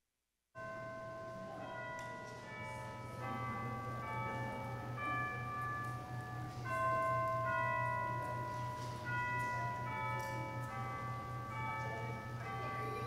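Slow bell-like melodic music, chimes playing a tune of held, overlapping notes, over a steady low hum. It cuts in suddenly out of dead silence about half a second in.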